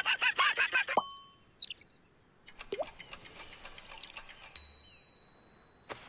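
Cartoon sound effects: a run of quick clicks, short high chirps, then a bright ding about four and a half seconds in that rings on and fades away.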